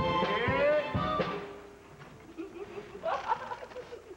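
A harmonica orchestra playing a chord, with one part sliding in pitch, then breaking off about a second and a half in. A short burst of voice follows about three seconds in.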